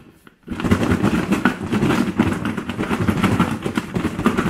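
Crispy fried chicken wings shaken hard inside a closed plastic Tupperware container to coat them in dry jerk seasoning, knocking against the walls and lid in a fast, continuous rattle. It starts about half a second in, after a brief pause.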